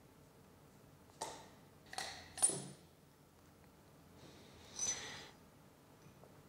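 Three sharp metal-on-metal knocks on a punch set down the barrel of a Heiniger Icon shearing handpiece, each ringing briefly, the third the loudest, driving the crankshaft out of the crankhead. About a second later comes a longer, softer metallic clinking as the loosened parts shift.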